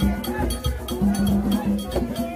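Ceremonial music: a metal bell struck in a fast, even rhythm over low percussion and many voices singing.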